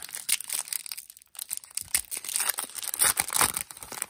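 A foil Topps Chrome baseball card pack wrapper being torn open and crinkled in the hands, a run of crackling with a brief pause about a second in.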